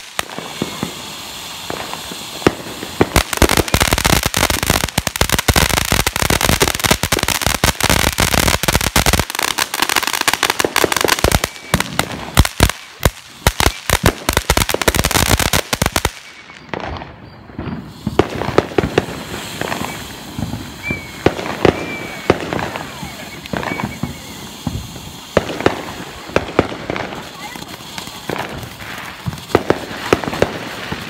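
Ground fountain fireworks spraying sparks with dense, rapid crackling for the first several seconds, then sparser pops and crackles after a short break near the middle.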